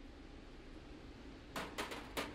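Quiet room tone, then a quick cluster of clicks and knocks about one and a half seconds in as a rifle is laid down on a shooting bench.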